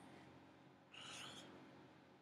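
Near silence: room tone, with one faint, short hiss about a second in.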